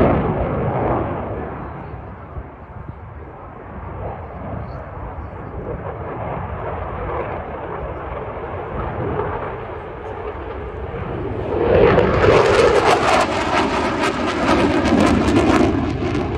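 F-16 fighter jet's engine noise rising and falling as it manoeuvres overhead. About twelve seconds in it grows much louder and harsher with a rapid crackle as the afterburner is lit.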